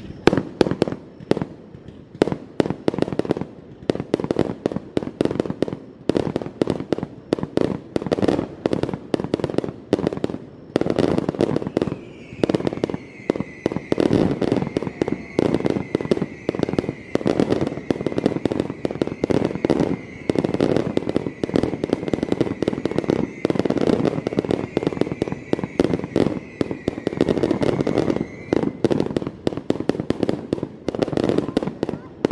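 Aerial fireworks show bursting in a rapid, continuous run of bangs and crackles, several a second. A steady high tone joins about twelve seconds in and stops shortly before the end.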